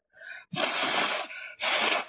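A woman blowing her nose into a tissue: two long blows a moment apart. She has had a cold for several days.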